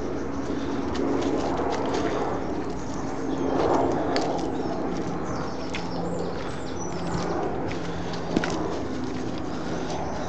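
Footsteps walking on a wet, muddy woodland path strewn with leaves, with scattered clicks and a faint steady low hum underneath; one sharper click about eight seconds in.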